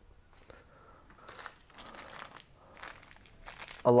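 A small plastic zip bag of metal zither pins being picked up and handled: faint crinkling of the plastic with light clinking of the pins, in several short bursts.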